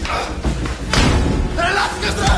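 A scuffle between men: a single heavy thump of an impact a little under a second in, and men shouting near the end.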